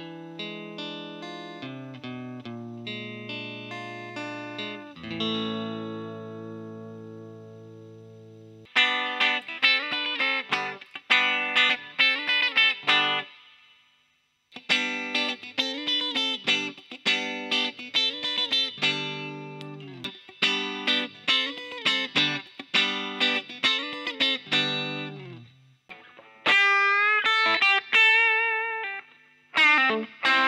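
Electric guitar, a custom Telecaster with Hepcat pickups, played through an amp. It starts on the neck pickup with single notes and a chord left ringing, then moves to louder, busier picked phrases, later in the middle pickup position. Near the end come a few held notes with vibrato.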